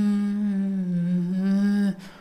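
A man humming one long held note in a low voice, the pitch sagging slightly in the middle and coming back up before it stops just short of two seconds.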